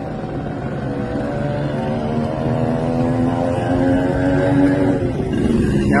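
A steady, droning motor hum whose pitch holds with only small shifts, growing louder past the middle.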